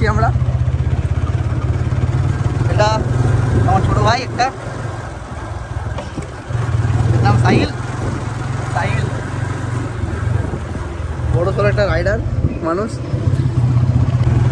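Motorcycle engine running on the move, with wind rushing over the microphone. The engine eases off about four seconds in and picks up again a couple of seconds later. Short snatches of voices come over it.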